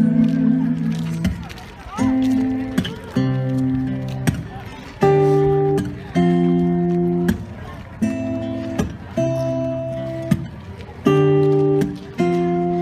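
Acoustic guitar playing slow strummed chords, one struck about every second, each left to ring before the next.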